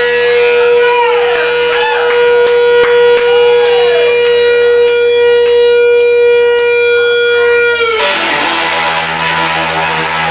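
Electric guitar, a Fender Stratocaster, holding one long sustained note under drum and cymbal hits as the band rings out a song's ending. The note stops sharply about eight seconds in, and the audience begins to cheer.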